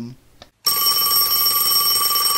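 Telephone bell ringing: one long, steady ring with a fast rattle, starting about half a second in.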